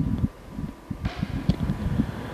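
Handling and rubbing noise on the microphone: a sharp knock at the start, then irregular low thumps and rustling as the priest moves with his book.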